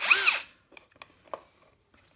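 Cordless drill-driver driving a screw through a caster's mounting plate into a plastic stand: one short burst of the motor, its whine rising and falling in pitch, followed by a few faint clicks.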